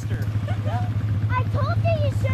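ATV engine idling steadily close by, with indistinct voices over it.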